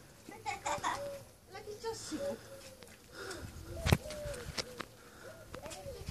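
Indistinct high-pitched voices of a child and women talking, with a single sharp click about four seconds in.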